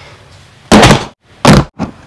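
Hard plastic knocking as a ride-on toy car's plastic windshield is fitted onto the car body: two loud knocks under a second apart, then a fainter one.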